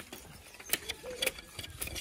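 Bamboo being chopped and split with a heavy curved knife: a few sharp, irregularly spaced cracks and knocks of the blade biting into dry bamboo.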